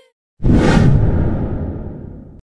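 A whoosh sound effect for a slide transition: a sudden noisy rush about half a second in that dies away over the next two seconds, its hiss sinking lower as it fades.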